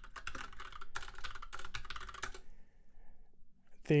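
Fast typing on a computer keyboard, a quick run of key clicks that stops about two and a half seconds in.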